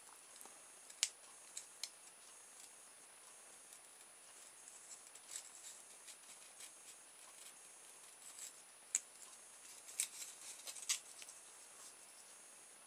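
Hobby knife cutting and scraping the edge of a polystyrene foam pizza-tray off-cut: faint, scattered scratchy slices and clicks, the sharpest about a second in, near nine seconds and around ten seconds.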